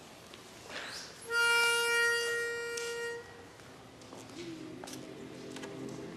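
A pitch pipe sounding one steady note for about two seconds, giving the barbershop chorus its starting pitch. About four seconds in, men's voices quietly hum the opening chord.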